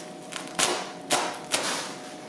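Unpacking noise: three sharp snaps or knocks about half a second apart, from the bubble-wrapped steel snow plow blade and its cardboard box being handled.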